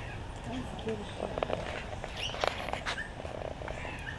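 Low, steady background rumble with scattered faint clicks, brief chirps and faint distant voices.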